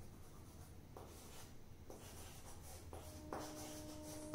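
Chalk writing on a chalkboard: soft, faint scratching strokes as letters are written out. A faint steady tone comes in near the end.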